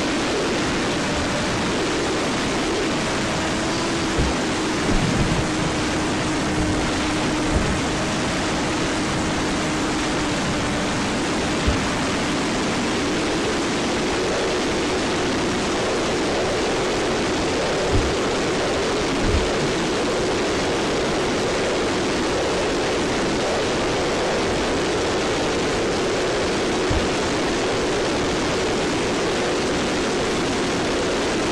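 Brushless electric motor and propeller of a ZOHD Dart XL RC plane (Sunnysky 2216 1250KV) humming steadily in flight, the pitch rising slightly about halfway through, under a constant rush of wind noise. A few short wind thumps hit the microphone.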